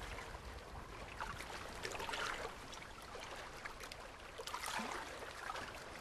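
A wooden canoe paddle stroking through river water: quiet splashes and drips every second or two over a faint steady wash of water.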